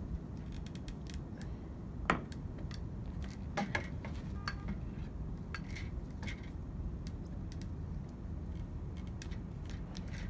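Scattered light clicks and clinks of Bullworker bow extension cables and handles being fed through and set underfoot, with a sharper click about two seconds in and a few more near the middle. Under them runs a steady low background rumble.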